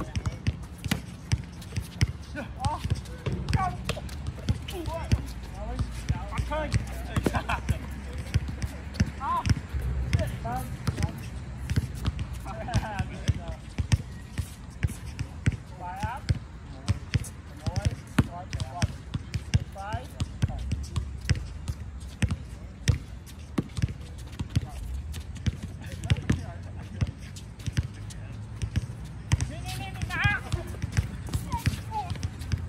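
A basketball bouncing on an outdoor hard court, with frequent sharp impacts throughout, mixed with the short shouts and calls of players during a pickup game.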